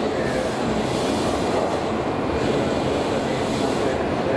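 Keihan electric train moving through an underground station: a steady, loud rumble of wheels and running gear, with a brief high-pitched wheel squeal about a second in.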